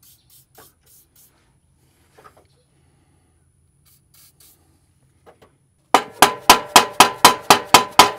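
Short, faint hisses of an aerosol penetrating-oil can sprayed onto exhaust joint nuts. About six seconds in, loud, rapid hammer blows on the steel exhaust begin, about four a second, each with a ringing metallic tone, knocking the stuck pipe loose.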